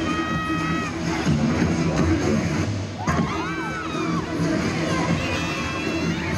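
Music playing loudly for a double dutch routine, with a crowd cheering and shouting over it; a held high note sounds in the first second and rising-and-falling shouts come about three seconds in.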